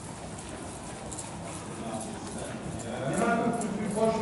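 Horse's hooves striking the sand footing of an indoor arena as it is ridden, with quieter voices in the background.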